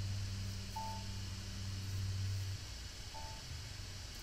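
A low steady hum that stops about two and a half seconds in, with two short faint beeps, one about a second in and one a little after three seconds.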